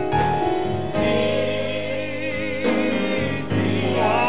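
Church praise team singing a slow gospel song, voices holding long notes with a wavering vibrato over steady keyboard chords.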